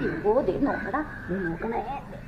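Voices: a baby vocalizing in short, high, bending sounds, with adults talking around him.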